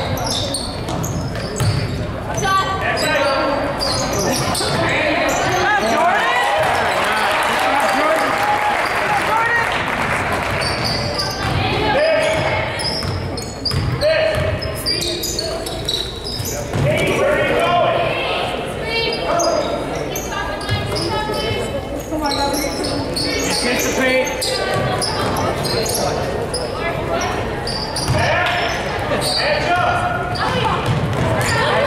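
Live basketball game in a gym: a basketball dribbled and bouncing on a hardwood court in short sharp knocks, mixed with players' and spectators' voices calling out, all echoing in the large hall.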